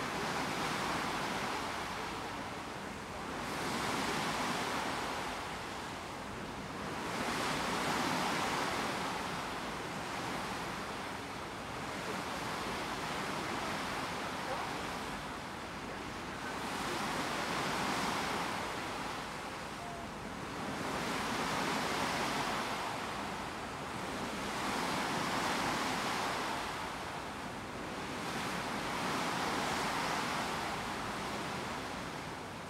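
Sea water rushing past the bow of a coastal passenger ship under way: a steady hiss that swells and fades about every three to four seconds.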